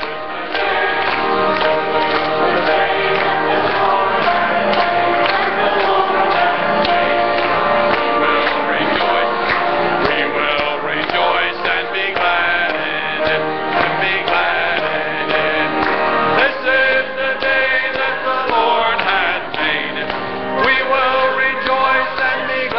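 Church choir and congregation singing an upbeat gospel song with instrumental accompaniment, a man's voice leading at the microphone, with hand-clapping along to the beat.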